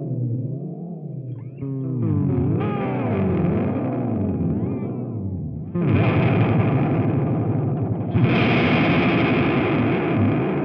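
Electric guitar chords played through a Red Witch Binary Star delay and modulation pedal. The deep pitch modulation makes the held chords waver up and down in slow sweeps. Fresh, louder chords are struck near the middle and again about eight seconds in.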